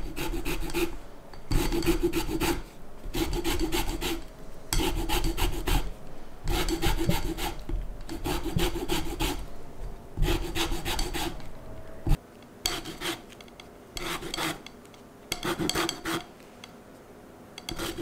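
Lemon being zested on a metal rasp grater: repeated scraping strokes of the peel across the grater, roughly one every second and a half, each under a second. The strokes grow shorter and more broken in the second half.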